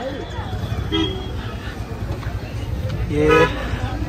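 Vehicle horns sounding briefly over a steady low rumble of idling and passing traffic: a short toot about a second in and a louder, steady-pitched honk near the end.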